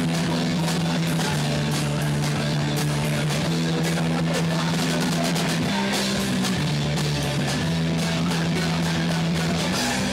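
Punk rock band playing live: electric guitars hold low chords that change every second or two over a driving drum kit.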